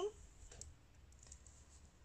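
Faint light clicks of metal circular knitting needles tapping together as the work is handled and a stitch is started.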